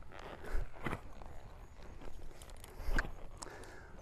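Friesian horse's hooves on sand arena footing: soft, irregular footfalls as the horse trots and turns, the clearest about a second in and about three seconds in.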